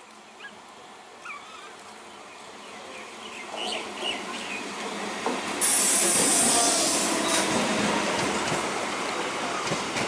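Electric multiple-unit commuter train arriving at a station platform. It is faint at first and grows into steady running and wheel noise as it draws level. About halfway through a loud, high hiss sets in suddenly and lasts a second or two.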